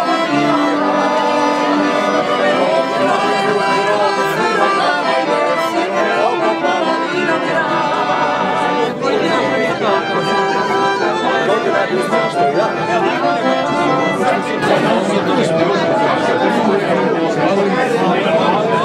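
An accordion playing a tune amid the chatter of a crowd of people talking. The talking becomes more prominent in the last few seconds.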